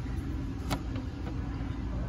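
Steady low background rumble with a single sharp click a little under a second in.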